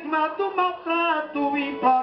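A repentista singing a held, wavering melodic line in a high voice, with plucked viola accompaniment, in the sung verse style of Northeastern Brazilian cantoria (quadrão mineiro).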